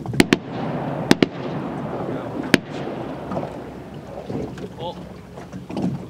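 Shotgun volley at a flock of incoming ducks: five shots in about two and a half seconds, two quick pairs and then a single, each echoing briefly.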